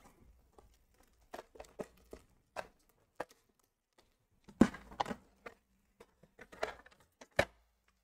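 Quiet handling noise from hard plastic PSA graded-card slabs being handled and lifted out of a cardboard box: scattered light clicks and plastic rustles, bunched in a few short clusters.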